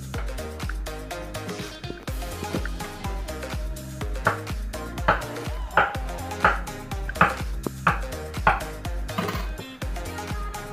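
Background dance music with a steady beat throughout. About four seconds in, a run of sharp knocks starts, roughly one every 0.7 s, and lasts about five seconds: a kitchen knife slicing through a peeled banana onto a wooden cutting board.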